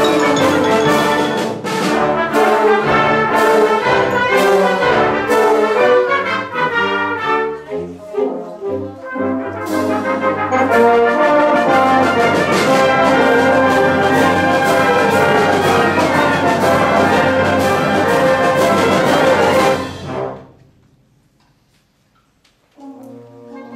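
Concert wind band of woodwinds, saxophones and brass playing a loud full-band passage that thins out briefly about eight seconds in, then swells again. The band cuts off together about twenty seconds in, and the sound dies away over a second or so.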